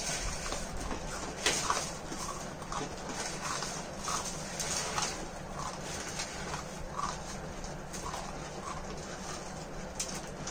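Several people eating instant noodles straight off plates with their mouths, with irregular slurping, sucking and smacking noises and a few short muffled vocal noises.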